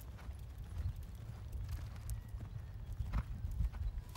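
Hoofbeats of a grey Standardbred horse cantering on a sand arena: dull, soft thuds with a few sharper strikes.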